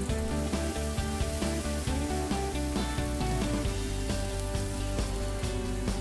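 Raw spatchcocked chicken sizzling on a hot grill grate over a direct charcoal fire in a kamado cooker, a steady hiss, with background music playing over it.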